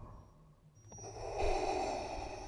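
Darth Vader's mechanical respirator breathing: one breath trails off at the start, a short lull follows, and a new hissing breath begins about a second in.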